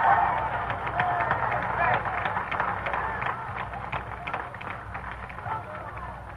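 Crowd cheering, shouting and clapping in reaction, the noise loudest at first and dying down gradually.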